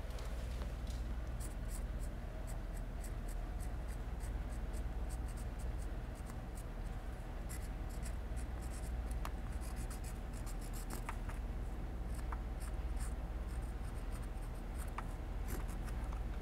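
A pen scratching on a painted brick wall in many short strokes as a signature is written by hand; the rough brick makes it a little hard to write.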